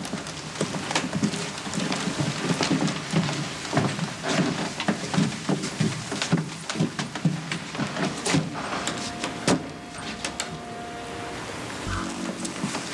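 A steady patter of many small irregular taps, like rain falling, with faint low tones underneath.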